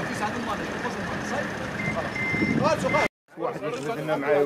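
Outdoor street noise with snatches of men's voices and a high electronic beep that sounds three times near the middle, like a vehicle's reversing alarm. The sound cuts off abruptly about three seconds in, then men's voices follow.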